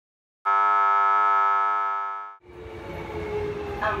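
A loud held tone made of many pitches at once sounds for about two seconds, fading and then cutting off sharply. The steady rumble of a Tokyo Metro Chiyoda Line subway train and station then takes over, and an announcement begins at the very end.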